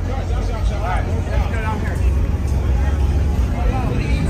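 Voices of people talking close by, over a steady low rumble.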